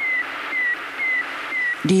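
Sputnik 1's radio signal as picked up by a receiver: short beeps about twice a second, each dipping slightly in pitch, over steady radio hiss. A man's voice starts near the end.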